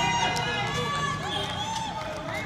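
Several people's voices calling and shouting across an open field, overlapping, with no clear words.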